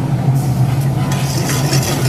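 Slit green chillies and ginger starting to sizzle in hot fat in a frying pan, stirred with a steel ladle; the sizzle starts about a third of a second in and grows louder after about a second. A steady low hum runs underneath.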